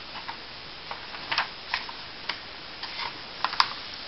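Pages of a paperback textbook being turned and pressed flat by hand: a string of light, irregularly spaced paper clicks and taps, the sharpest a little before the end.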